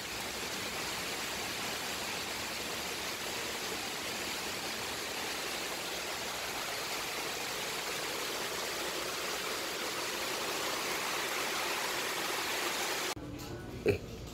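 Heavy rain pouring down steadily, an even hiss that cuts off suddenly near the end.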